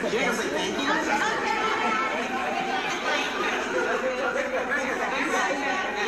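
Many voices talking over one another: the chatter of a crowd of young people.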